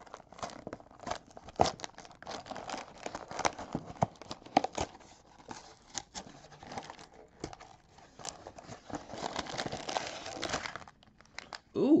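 A small cardboard LEGO set box being torn open by hand, with scraping and tearing of the card, followed by the crinkling of the plastic parts bags inside. The crinkling is densest near the end.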